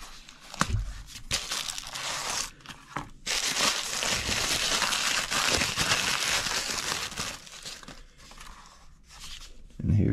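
Brown packing paper crinkling and rustling as a folding knife is unwrapped from it by hand, densest from about three to eight seconds in, after a few sharp clicks near the start.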